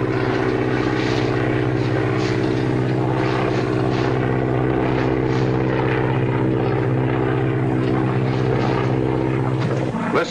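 Propeller airplane engine droning at a steady pitch, as an old film sound effect. It cuts off abruptly near the end.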